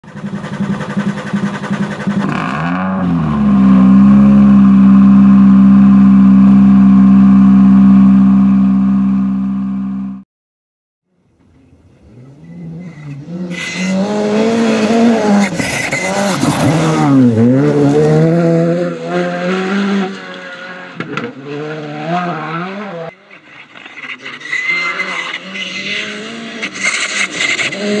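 A loud steady droning tone that rises briefly, then holds, and cuts off abruptly about ten seconds in. After a moment's silence, a Škoda Fabia rally car's turbocharged four-cylinder engine revs hard on gravel, rising and falling through gear changes as the car approaches and passes, with stones and tyres crunching.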